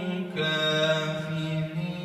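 A man's voice in melodic Quran recitation, drawing out long ornamented held notes, with a short break about a third of a second in.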